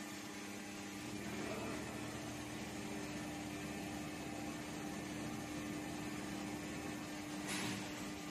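Large Mitsubishi 1050-ton plastic injection molding machine powered on, giving a steady hum. A short hiss comes near the end.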